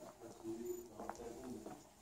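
Faint, indistinct voices with a few light clicks.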